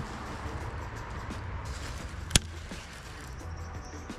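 A single sharp click from a handled baitcasting reel, about two and a half seconds in, over a low, steady background rumble.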